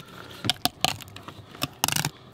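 Fillet knife cutting down along a coho salmon's backbone, a string of irregular crackling clicks as the blade crosses the bones.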